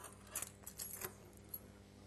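Handling noise: a handful of short clinks and rattles in the first second and a half, over a steady low hum.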